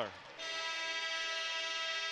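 Basketball arena horn sounding one steady tone for nearly two seconds, starting about half a second in: the signal for a stoppage, here the final media timeout.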